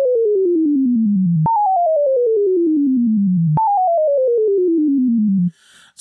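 Moog Modular V software synthesizer tone stepping down in pitch in quick even steps, about ten a second, then jumping back to the top and falling again. This is a staircase wave from a sample-and-hold fed a descending sawtooth. There are three falling runs, and the tone stops shortly before the end.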